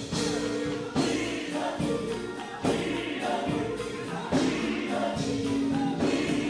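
Live gospel song: a female lead singer with a group of backing singers over keyboard and electric guitar, with sharp accented hits about every second. The lead vocal is low in the mix against the choir and band.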